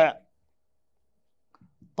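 A man's voice trails off at the very start, followed by near silence, with a few faint clicks shortly before speech resumes.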